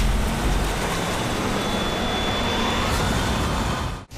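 Toyota Innova MPV driving past on a paved road, with steady engine and tyre noise that cuts off suddenly at the end.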